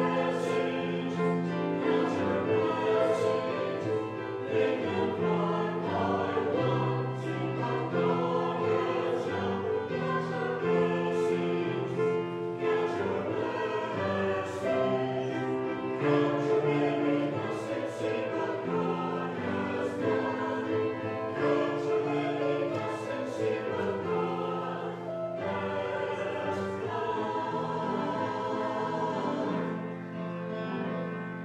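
Choral music: a choir singing held, slowly changing chords.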